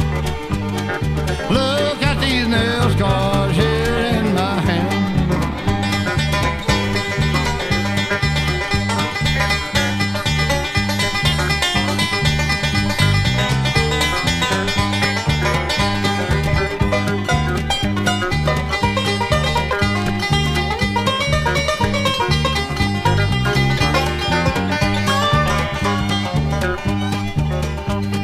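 Instrumental break of a bluegrass song: plucked banjo and guitar over a steady, evenly stepping bass rhythm, with sliding notes a few seconds in and again near the end.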